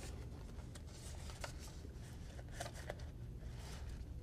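Faint rustling of paper label stock with light scattered clicks as the label web is pulled and threaded by hand through a thermal label printer's media path, over a low steady hum.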